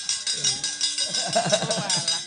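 Javanese gamelan playing a brisk rhythm of rapid metallic strikes, with women's voices over it.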